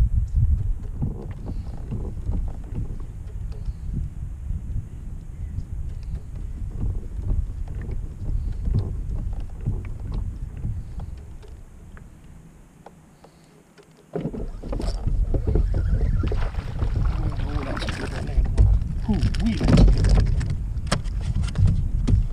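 Low rumble of wind and handling noise around a kayak, with scattered light knocks. It fades almost away about twelve seconds in, then comes back suddenly and louder about two seconds later.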